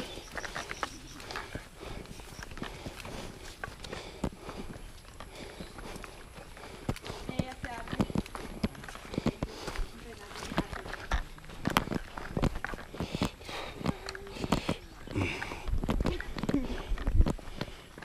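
Footsteps walking along a grassy, muddy dirt trail, an uneven run of soft thuds and scuffs, with faint voices now and then.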